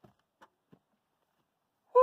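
A few faint clicks, then near the end a man's loud sigh whose pitch drops steeply.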